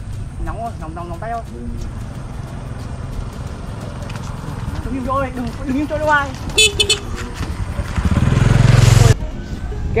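Wind buffeting the microphone with shouting voices, then a motorbike horn beeping several short times near the end, followed by a louder rush of engine and wind noise that cuts off suddenly.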